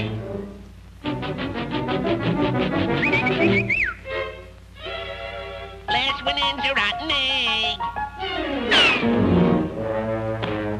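Orchestral cartoon score playing quick, repeated staccato notes, with wavering held tones and a couple of falling slides in pitch.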